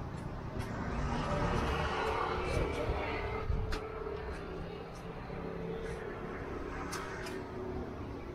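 Outdoor background noise with a road vehicle going by. Its sound swells over the first few seconds and then eases off, with a few faint clicks.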